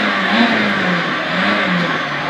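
Peugeot 206 XS Group A rally car's four-cylinder engine running hard, heard from inside the cabin, its pitch rising and falling twice as the car slows for a tight left-hand corner.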